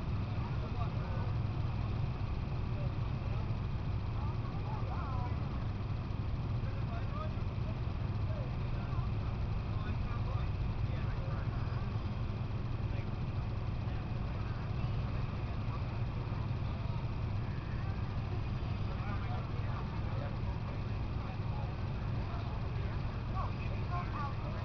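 A steady, unchanging low mechanical hum with faint distant voices over it.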